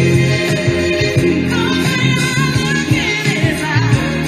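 Recorded R&B/soul ballad with a female lead voice. Over a low, steady bass line she sings a wavering, bending vocal run in the second half, with backing vocals behind her.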